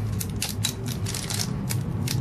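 Plastic parts bag from an RC helicopter kit being opened and handled: a quick, irregular run of crinkles and clicks.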